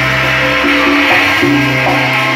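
Live band playing, with saxophone and trumpet holding long notes over a steady low bass line and a wash of drum-kit cymbals.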